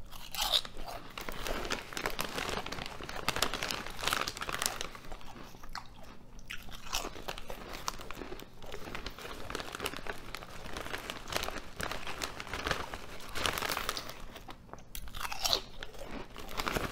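Close-miked crunching and chewing of Ruffles ridged potato chips: a bite about half a second in, then a continuous run of crisp crunches as the chips are chewed.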